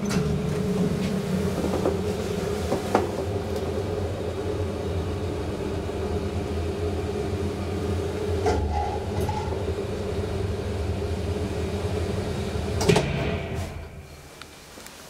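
Old Otis traction elevator car travelling up: a steady hum and rumble of the ride with a few light clicks along the way. A louder clunk comes about a second before the end as the car stops at the floor, and the running sound dies away.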